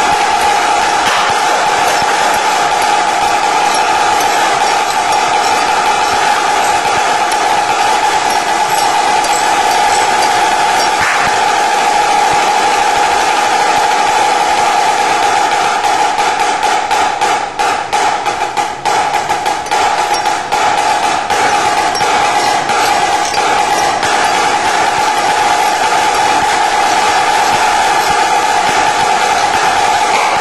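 Marching snare drum played solo with sticks in fast, dense rolls and rudiments, its tight head giving a steady high ring. For a few seconds past the middle the rolls break into separate, spaced hits before the dense rolling returns.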